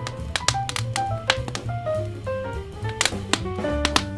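Smooth jazz with a bass line and drums, with sharp pops and clicks scattered through it from a crackling wood fire mixed in.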